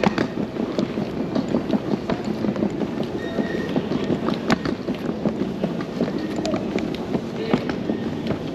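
Hard wheels of a rollaboard suitcase rolling over a tiled terminal floor: a steady rumble with irregular sharp clicks, over the hall's background noise.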